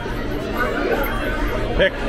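People talking over a steady background hum of voices; a voice says "pick" near the end.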